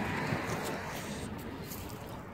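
Steady, low outdoor background noise with no distinct sound standing out.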